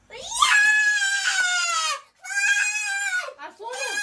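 A young boy's high-pitched whining wail of protest: one long drawn-out cry that rises and then sags, followed by two shorter cries that each fall away at the end.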